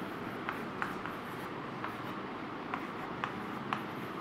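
Chalk writing on a blackboard: short, irregular taps and scratches, about two a second, over a steady background hiss.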